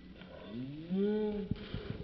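A deep, drawn-out, moo-like call, slowed down with the slow-motion footage: its pitch rises, holds for about half a second, then falls. A few thumps follow near the end.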